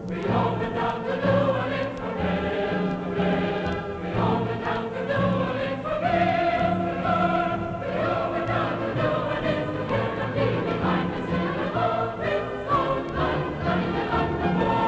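Choral music: a choir singing long held notes over a steady low accompaniment.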